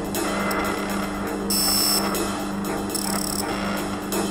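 Experimental electronic music: a steady low drone under a dense, grainy texture, with bright high-pitched tones cutting in briefly about a second and a half in and again near three seconds.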